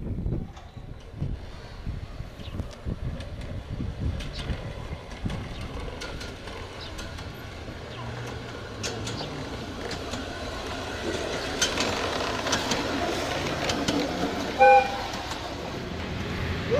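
Ride-on miniature train running along its track, growing louder as it approaches, with irregular low thumps in the first few seconds. A short, loud horn toot sounds near the end.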